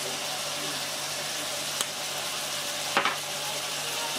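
Chicken hearts and onions sizzling steadily in hot oil in a frying pan, over a faint low hum. A small click about two seconds in and a brief tap near the end.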